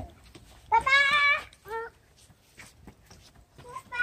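A young child's high-pitched squeal, wavering and held for most of a second, followed by a shorter squeal; another brief one comes near the end.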